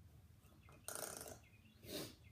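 Faint rasp of a plastic tail comb raking through a mannequin's hair: one short stroke about a second in and a softer one near the end.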